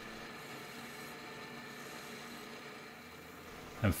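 Small metal lathe running steadily: a faint even hum with a hiss over it, no distinct strokes or knocks.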